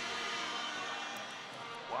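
Steady arena background sound with faint music in it, easing off slightly toward the end.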